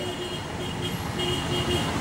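Outdoor background noise with faint road traffic, and a faint steady tone that breaks on and off.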